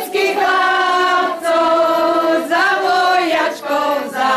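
A group of voices singing a song together in long held notes, with short breaks between phrases about once a second.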